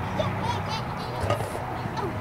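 Indistinct voices of spectators talking around the arena over a steady low hum, with one short tick about a second and a half in.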